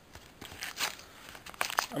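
A few short rustles and crinkles of paper as a mailing envelope is handled and its paper-wrapped contents are pulled out.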